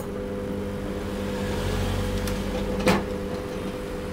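Opened microwave oven switched on with a click, then a steady mains hum from its high-voltage transformer and magnetron, with a sharp click about three seconds in. The hum is that of a magnetron that is working, which the repairer judges to be perfect.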